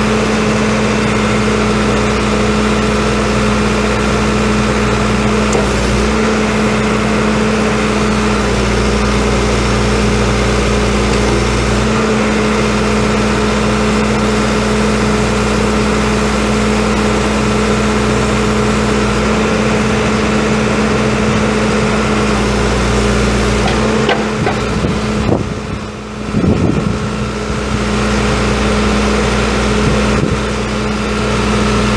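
The 4.5-litre four-cylinder turbo diesel of a 2003 John Deere 310SG backhoe running steadily, with a brief dip in level about 25 seconds in.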